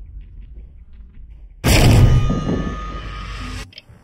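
Horror-trailer sound design: a low rumble with faint ticking, then, about a second and a half in, a sudden loud hit with a ringing tail that cuts off abruptly near the end.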